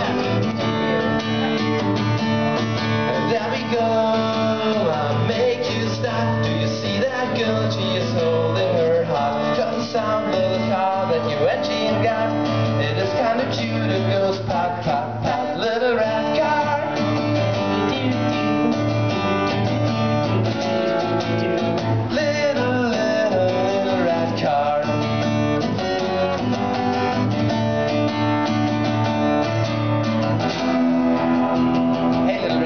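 Acoustic guitar strummed steadily in a live song, with a voice singing a melody over it in stretches.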